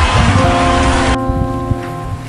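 Background music: a dense hissing wash that cuts off abruptly about a second in, leaving a held chord of several steady notes.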